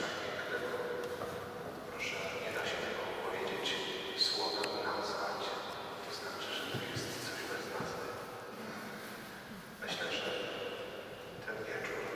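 Speech, spoken quietly and echoing in a large church.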